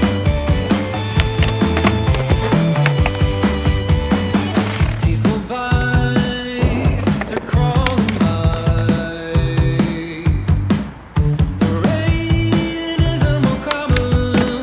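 Rock music with a steady beat over a skateboard rolling on concrete and board sliding along a concrete curb ledge.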